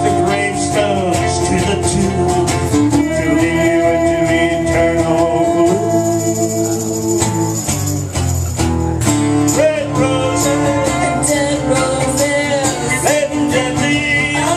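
Live acoustic song: steel-string acoustic guitar strumming with tambourine hits, under a held, gently wavering melody line.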